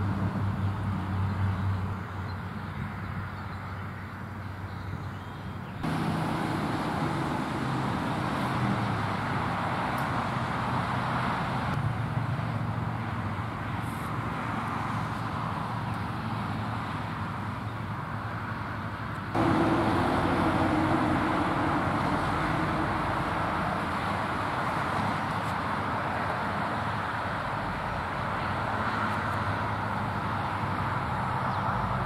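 Steady outdoor background noise, a rumble and hiss like distant road traffic, that jumps abruptly in level about six seconds in and again about nineteen seconds in.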